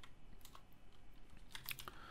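Computer keyboard typing: a few faint, scattered key clicks, more of them in the second half.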